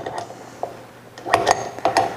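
Metal kitchenware being handled: a stainless steel mixing bowl and utensils give a light knock, then a few sharp clinks about one and a half seconds in, one ringing briefly.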